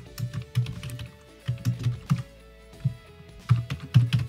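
Typing on a computer keyboard: short runs of quick key clicks with pauses between them, over faint background music.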